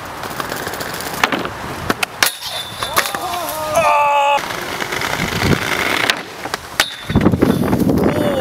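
Inline skate wheels rolling over brick paving, with sharp clacks of skates striking a metal handrail. Near the end comes a heavy crash as the skater falls off the rail onto the ground.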